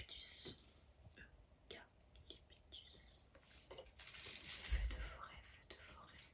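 Close-miked whispering with the crackle and rustle of dry leaves being handled right at the microphone. It grows louder about four to five seconds in, with a low rumble on the mic.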